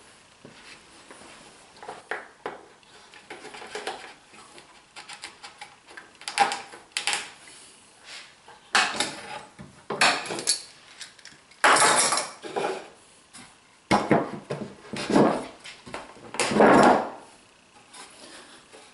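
Wooden Domino loose tenons being handled and pushed into their mortises, then a board fitted down over them in a dry fit: a series of short wood-on-wood scrapes and knocks, the longest and loudest near the end.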